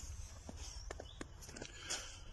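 Faint footsteps on snowy ground, a few soft steps in quick succession, over a steady low rumble.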